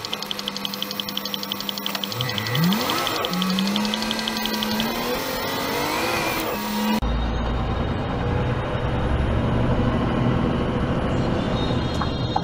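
Vehicle engine rising in pitch as it accelerates, with a fast regular ticking over it. About seven seconds in the sound cuts abruptly to a steady low engine and road rumble in a lorry's cab.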